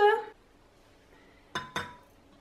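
Two quick metallic clinks with a short ring near the end: a small stainless steel double-boiler pan knocking as it is set down on a kitchen scale.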